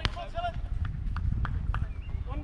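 A single sharp smack of a baseball right at the start, followed by scattered voices of players and spectators calling out, over a low rumble of wind on the microphone.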